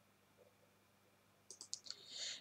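Near silence, then a few faint, quick computer mouse clicks about a second and a half in.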